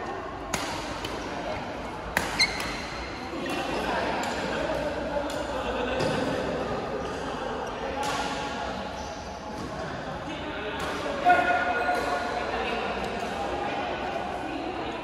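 Badminton racket strikes on a shuttlecock: a handful of sharp hits, two in quick succession after about two seconds and the loudest near the end, ringing in a large reverberant hall over a steady murmur of voices.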